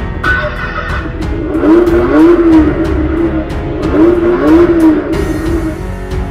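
Music with a steady beat, over which a recorded car-engine sound revs up and falls back twice.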